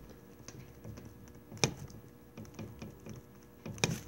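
A stylus writing on a tablet: a run of quiet clicks and taps as the letters are formed, with two sharper clicks, one about one and a half seconds in and one near the end.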